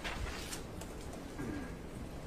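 Paper rustling as deposition pages are turned: a few soft rustles and light clicks over quiet room noise.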